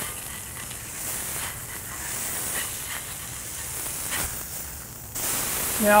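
Smashed beef burger patty sizzling on a hot flat-top griddle: a steady frying hiss.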